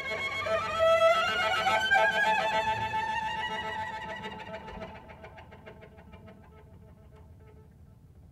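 Solo cello playing a quick trill high on the strings, its notes sliding upward. It then dies away to a faint, barely-there flicker of bowing.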